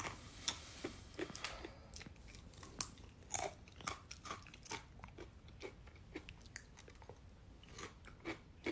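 Crisp apple chips being bitten and chewed close to a microphone: a run of irregular, quiet crunches.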